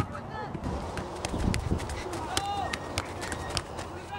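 Indistinct voices calling across an open field, with the scattered short taps and footfalls of players running on grass.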